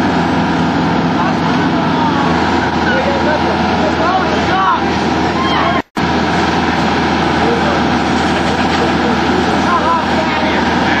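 Fire engine's diesel engine running steadily at raised revs to drive its pump, with crowd voices over it. The sound cuts out for a moment about six seconds in.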